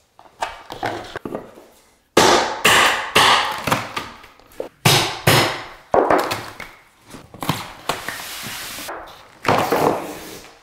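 Baseboard being pried off a drywall wall: a series of sharp knocks as a hammer drives a pry tool in behind the trim, a longer stretch of scraping and cracking as the board is levered away, and a last hard crack near the end.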